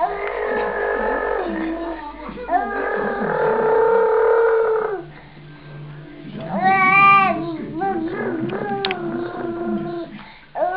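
A toddler girl babbling in long, drawn-out sing-song sounds without real words, with a louder, higher-pitched wavering squeal about seven seconds in.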